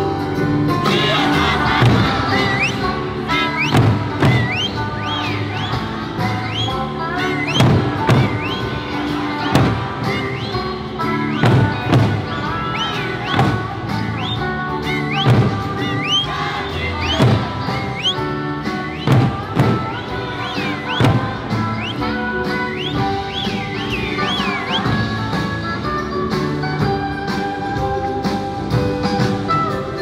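Okinawan Eisa music with loud big-drum (ōdaiko) strikes hit together about every two seconds over a continuous melodic backing with short rising pitch slides.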